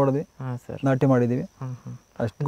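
A man speaking in short phrases, with a faint, steady high-pitched insect trill in the background.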